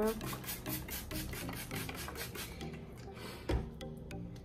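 Trigger spray bottle misting water onto hair in quick repeated squirts, about five a second, which stop about two and a half seconds in. A single dull thump follows near the end.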